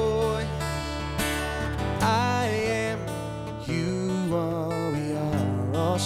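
Live country music led by a strummed acoustic guitar, with steady low bass notes and a wavering lead melody line above, in a passage between sung lines of the song.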